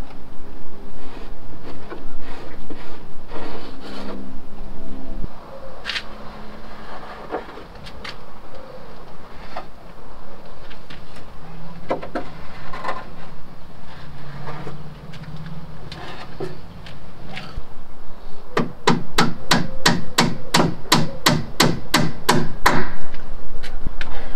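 Hammer tapping cheap steel nails into the plywood hull panels: a fast, even run of sharp blows, about four or five a second, near the end. Before it, scattered knocks and scraping of hand work on the wooden hull.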